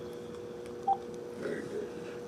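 A steady two-note telephone tone over a speakerphone after a call's voicemail message ends, with one short higher beep about a second in.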